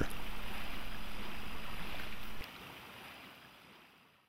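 Steady outdoor ambience of lapping lake water and light wind, a soft even hiss that drops abruptly a little past two seconds in and then fades away.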